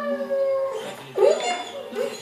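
German Shepherd dog howling: a long drawn-out note that slides slowly downward, then a second, shorter call that rises and falls just after a second in.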